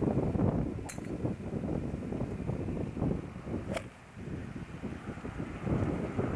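Wind buffeting the microphone in gusts, with two sharp clicks, about a second in and again near four seconds.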